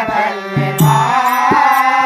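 Kannada devotional bhajan: a man's voice singing over a harmonium's steady reed chords, with tabla strokes and the chime of small hand cymbals keeping the beat.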